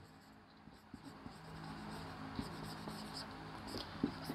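Marker pen writing on a whiteboard: faint scratchy strokes that begin about a second in.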